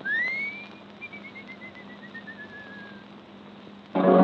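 A person whistling on an old vocal recording: one note gliding upward, then a run of about a dozen short notes stepping down in pitch, over steady record hiss.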